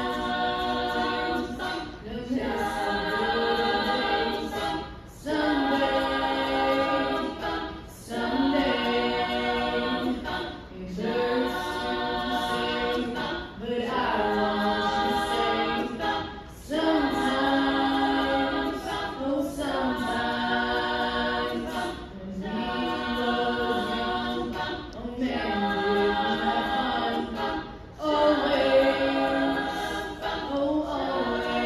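All-female a cappella group singing in harmony, with no instruments, in phrases of about three seconds separated by short breaks.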